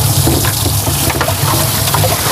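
Water gushing and splashing in a boat's livewell, churned by the inflow and the fish, over a steady low hum.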